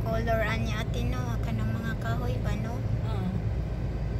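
Steady low rumble of a car driving, engine and road noise heard from inside the cabin. A voice talks over it for the first couple of seconds.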